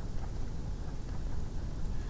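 Low, steady background rumble on a desk-recording microphone, with a few faint ticks from a stylus writing on a tablet.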